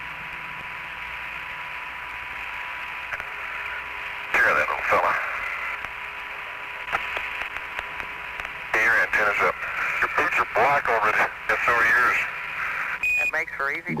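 Apollo air-to-ground radio link: a steady band of static hiss with a thin steady tone, broken by short stretches of distorted astronaut voice chatter about four seconds in and again from about nine seconds.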